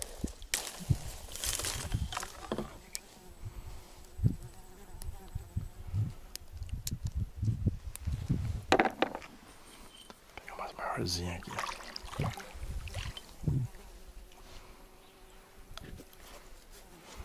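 Scattered knocks, taps and rustles from handling bait and a bamboo fishing rod in a plastic kayak, with an insect buzzing faintly and steadily through much of it.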